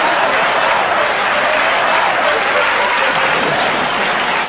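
Studio audience applauding, with laughter mixed in, at a steady level.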